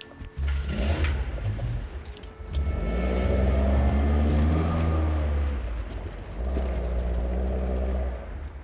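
A car engine running and revving as the car accelerates away, loudest a few seconds in, easing off, then rising again near the end.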